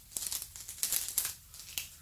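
Cellophane wrap on a perfume box crinkling in a run of irregular crackles as it is handled and folded back over the box, to hide that the box has been opened.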